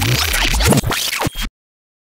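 Turntable-style scratching sound effect over a low bass, a rapid run of scratchy strokes that cuts off suddenly about one and a half seconds in.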